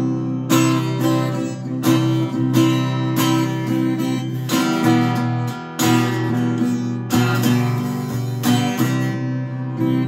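Acoustic guitar being strummed, chords ringing on between sharper accented strums about every second or so.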